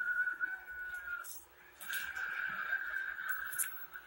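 A person whistling two long, steady, high notes with a short break between them, over faint rustling from the booklet being handled.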